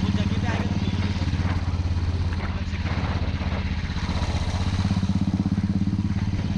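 Royal Enfield single-cylinder motorcycle engine running steadily under way at low road speed, with a rapid, even low pulse.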